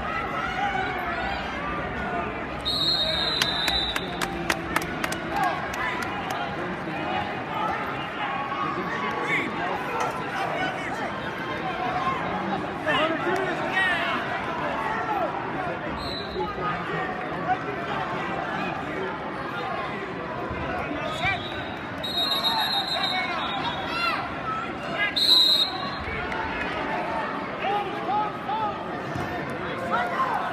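Crowd voices and shouting in a large arena throughout, with short, high, shrill whistle blasts from the referee about three seconds in and again twice later on.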